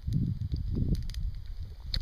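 Wind rumbling on the microphone while a man sips wine from a plastic cup, with a few faint clicks.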